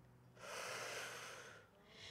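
A woman's audible breath out, lasting about a second, as she rounds her back and draws her knee in to her chest in a yoga movement.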